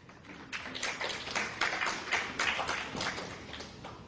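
Scattered audience applause from a smallish crowd, with separate claps audible. It starts about half a second in and dies away near the end.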